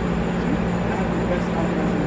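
A steady low mechanical hum with a constant low rumble beneath it, unchanging throughout, with faint voices over it.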